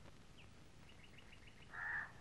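A small bird chirping faintly: one high chirp, then a quick run of about six short chirps. A short breathy hiss near the end is the loudest sound.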